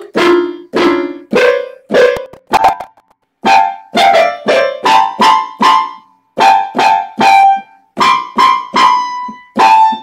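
Music: a melody of short, separately struck keyboard notes, each fading before the next, in a steady rhythm with a few brief pauses.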